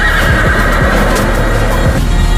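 A horse whinnying, one long wavering neigh that fades near the end, over loud background music with a heavy beat.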